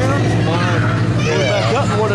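A man talking, with a steady low hum underneath.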